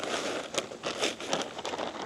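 A large plastic bag of potting mix crinkling and crackling as it is gripped and lifted, with irregular crackles and a few sharp ticks.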